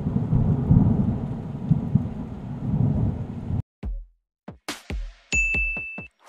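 Rumbling thunder sound effect that cuts off suddenly about three and a half seconds in. It is followed by a quick run of sharp hits with deep falling booms, and a steady high beep near the end.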